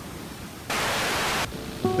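A short burst of static-like hiss, about three-quarters of a second long, that starts and stops abruptly.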